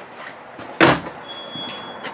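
A single sharp knock about a second in, against a faint high steady tone that comes and goes.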